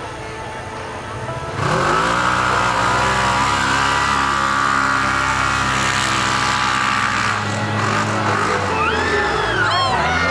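Side-by-side UTV engines at full throttle in a drag race down a mud track, starting suddenly about a second and a half in, rising quickly in pitch and then holding a steady high pitch for several seconds before easing off near the end.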